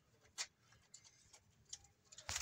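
A calf suckling from a goat's teat: a few faint, short sucking clicks, the sharpest about half a second in.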